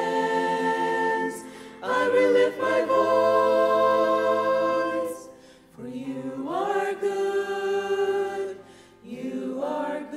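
Choir singing slow, held chords phrase by phrase, with short breaks between phrases about two, six and nine seconds in.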